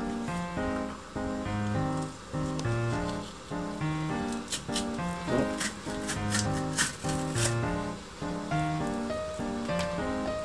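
Background music: a light instrumental tune of repeating notes with a steady beat.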